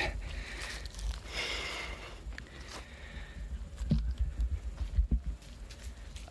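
Wind rumbling on the microphone, with a short breathy hiss about a second and a half in and a few faint knocks later on. No trimmer engine is running.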